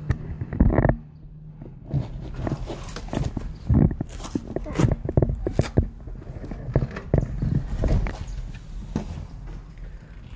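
Irregular knocks, scuffs and footsteps of a person getting into a house and stepping down into its basement, with the phone knocking about in hand.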